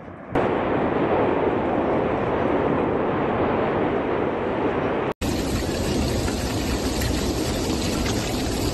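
Continuous, dense rushing noise from the erupting volcano and its lava flow. It cuts out abruptly about five seconds in, and a similar steady noise follows straight after.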